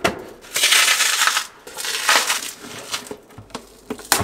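Handling of an opened LiFePO4 battery pack on a workbench: crunching and rustling in two noisy stretches, about half a second in and again around two seconds in, with a few sharp knocks.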